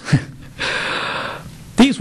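A person's short laugh: a brief voiced catch, then about a second of breathy, rushing exhalation close to the microphone.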